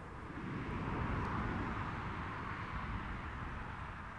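A road vehicle passing by: a rush of tyre and engine noise that swells about a second in and slowly fades away.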